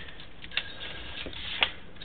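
Quiet background noise with a low hum and two faint clicks, one about half a second in and one near the end.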